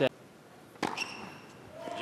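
A tennis ball struck sharply by a racket once, a little under a second in, in a hushed indoor arena, with a short high squeak around the stroke. The crowd noise begins to swell near the end as the point is won.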